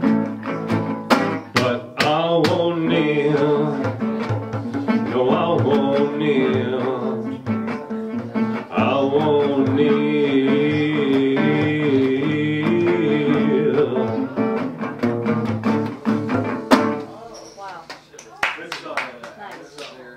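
Metal-bodied resonator guitar played to close a folk-blues song: strummed and picked chords with held notes, stopping about 17 seconds in.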